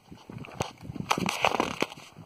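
Footsteps crunching and scuffing on dry grass and stony dirt, in an uneven run of short crunches that are busiest about one to two seconds in.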